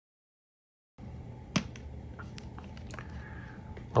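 Dead silence for about a second, then quiet room tone with one sharp click and a few light ticks as a small plastic oil bottle and a folding knife are handled.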